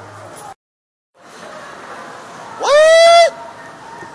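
A person's loud, high-pitched yell, rising sharply and then held for under a second, a little past halfway, over a steady background hubbub. The sound cuts out completely for about half a second near the start.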